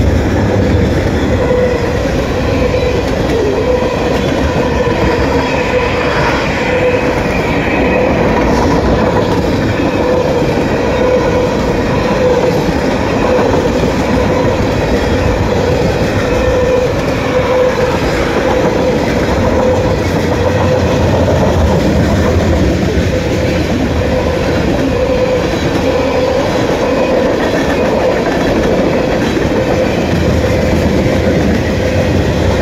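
A loaded CSX manifest freight train's tank cars and gondolas rolling past close by: a steady, loud rumble and clatter of wheels on rail joints. A steady tone runs under the rumble throughout.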